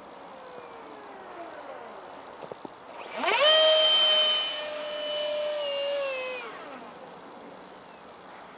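Detrum 70mm electric ducted fan of a foam-board RC jet whining in flight. A faint falling whine in the first couple of seconds; then, about three seconds in, the whine rises sharply and loudly, holds a steady high pitch, and eases down and fades by about six and a half seconds.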